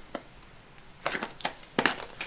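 A few sharp plastic clicks and knocks, about a second in and again near the end, from hands working at the latch of a clear plastic storage case that will not open.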